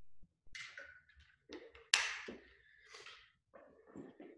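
Handling noise as a water bottle and a backpack are picked up and moved: scattered rustling, with one sharp knock about two seconds in.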